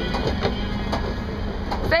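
Monorail train running past: a steady rumble with a few light clicks.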